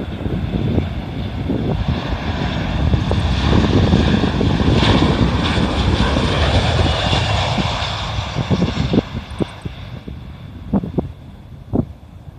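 A Solaseed Air Boeing 737-800 flies low past on its landing approach, its jet engines rumbling under a high whine. The sound swells to its loudest about four to six seconds in, then fades after about nine seconds.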